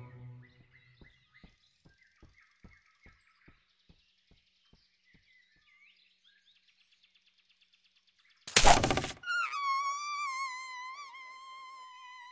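Animated-film soundtrack: faint birdsong with a run of small taps, about three a second, that fade out. About eight and a half seconds in comes a sudden loud crash, then a held, wavering musical note.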